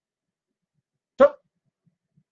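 Speech only: a man's voice saying one short word, "Stop!", about a second in.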